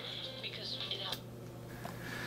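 Faint, hissy broadcast sound, voices and music, from the small speaker of a Casio SY-4000 handheld TV picking up a weak analog signal. It cuts off about a second in as the tuner searches for the next channel, leaving a low steady hum and a few light clicks.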